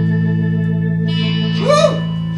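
Guitar holding one sustained chord through effects, with a chorus-like shimmer. A brief swooping sound rides over it near the end.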